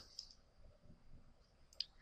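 Near silence: faint room tone, with one soft click near the end.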